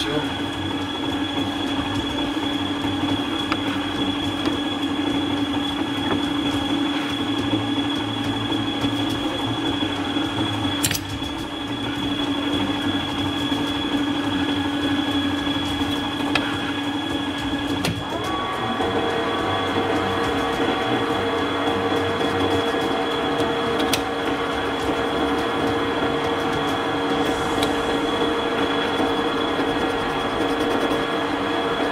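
Metal lathe running with a steady machine whine. About eighteen seconds in the sound shifts, with a short rising whine and a new, higher steady tone, as the spindle is set turning and the three-jaw chuck spins up.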